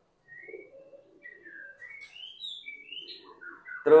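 Birds chirping in a string of short rising and falling calls, with faint low pigeon cooing underneath in the first second or so.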